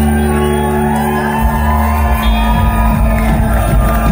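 Live band music played loud through a hall's sound system: deep held bass notes under electric guitar, the bass line changing about halfway through.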